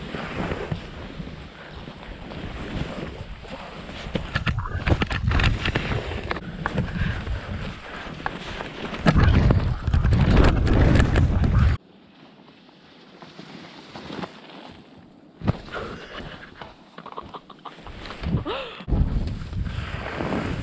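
Skis scraping and hissing over packed snow, with wind buffeting the helmet camera's microphone in a heavy rumble. The rumble stops suddenly about two-thirds of the way through, leaving quieter ski scrapes and a single knock.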